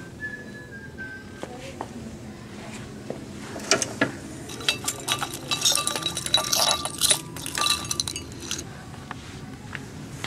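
Small items clinking and rattling against each other and a cut-glass pedestal bowl as a hand rummages through them: a dense run of sharp, ringing clinks for about five seconds in the middle.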